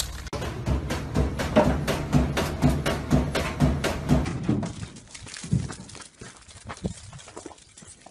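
An animal chewing and crunching on a plastic cup, a run of sharp knocks about three or four a second. After about four seconds this gives way to quieter, scattered soft knocks.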